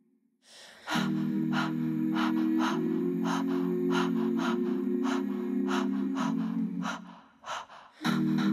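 Looped a cappella vocal layers from a loop pedal: a sharp intake of breath, then from about a second in a sustained hummed chord under breathy vocal-percussion beats, about three a second. The loop drops out briefly near the end and comes back.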